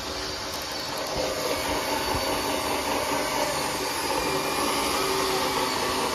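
A steady mechanical hum with a hiss, the running noise of a machine, slightly louder after the first second.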